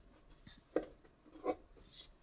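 A near-silent pause in a man's talk, broken by two faint, brief sounds, about a second in and again about half a second later.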